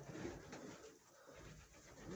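Faint cooing of domestic pigeons, barely above the background.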